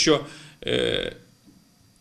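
Speech that breaks off into a short throaty, drawn-out hesitation sound of about half a second, followed by a brief pause.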